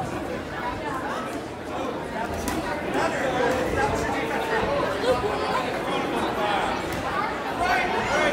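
Spectators chattering and calling out, many voices overlapping at once.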